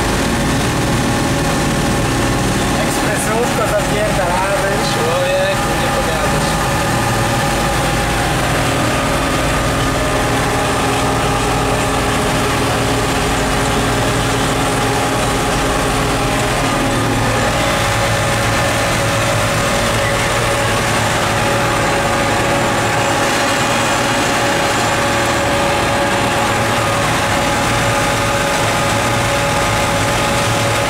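Case CS 150 tractor's engine running steadily on the road, heard from inside the cab, with an even drone that holds constant throughout.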